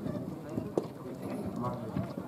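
Background chatter of several people talking at once, fairly low, with a few sharp taps or knocks, one about three-quarters of a second in.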